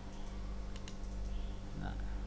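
A few short clicks at a computer, from mouse and keyboard, over a steady low electrical hum.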